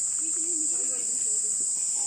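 Steady, unbroken high-pitched insect drone, with a voice talking faintly under it in the first half.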